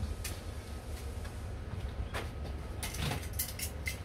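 Someone rummaging for small tools out of sight: a few scattered clicks and rattles, bunched near the end, over a steady low background hum.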